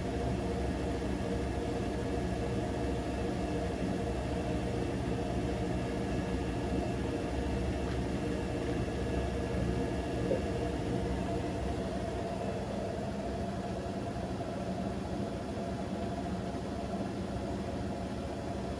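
Bosch Serie 6 front-loading washing machine spinning a single jumper on the wool cycle: a steady motor and drum hum with a faint whine, the whine fading about two-thirds of the way through.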